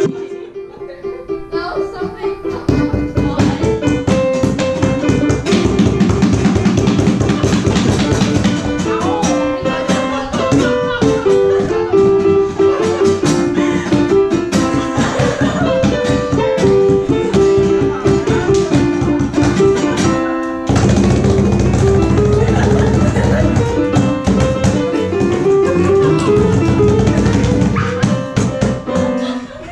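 Live digital piano, acoustic guitar and cajón playing a song together with a steady beat. The playing thins for a moment about twenty seconds in, then comes back fuller.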